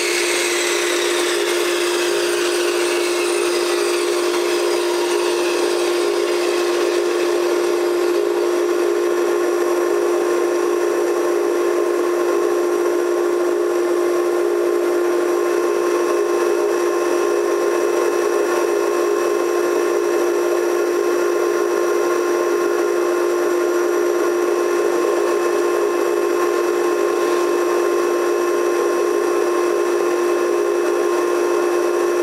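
A shop vacuum hooked to a Bosch table saw's dust hose runs with a steady hum and hiss. Over the first several seconds a fading whine falls in pitch as the switched-off saw blade winds down.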